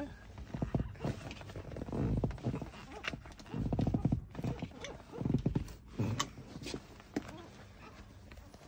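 Handling noise of a lap seat belt being pulled tight through its adjuster: irregular clicks and knocks of the metal buckle with rustling of the webbing, coming in a few short clusters with single sharp clicks between.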